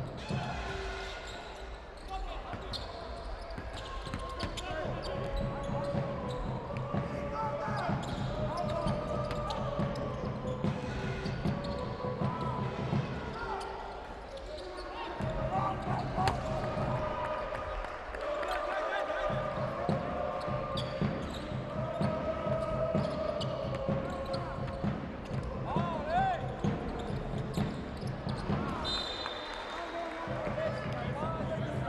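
Basketball court sound in an indoor arena: a ball dribbled on the hardwood floor in repeated bounces, sneakers squeaking in short glides, and scattered shouting from players, coaches and the crowd. A steady low hum runs underneath.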